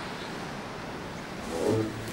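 Steady rush of ocean surf on a beach. Music begins near the end with a low held bass note.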